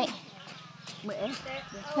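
A woman speaking Thai: a word trails off at the start, a quieter pause follows with a brief faint voice-like sound about a second in, and loud speech starts again at the end.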